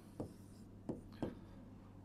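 A pen writing on an interactive whiteboard screen: three faint short strokes and taps against the panel.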